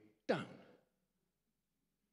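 A man's voice speaking a single word, falling in pitch, then a pause of over a second with almost nothing to hear.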